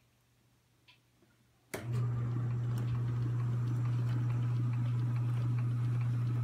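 Ampico reproducing piano's electric motor and vacuum pump switching on suddenly a little under two seconds in, after near silence, then running with a steady low hum, a rushing sound and faint ticks, before the roll begins to play.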